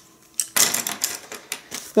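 A handful of plastic ballpoint pens being set down on a wooden desktop, clattering against each other and the wood. It is a quick run of light clicks and rattles, starting about half a second in.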